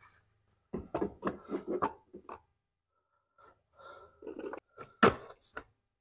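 Plastic fuel tank being set back onto a Honda GCV160 mower engine and worked into place by hand: a run of light knocks and rubbing, with a sharper knock about five seconds in.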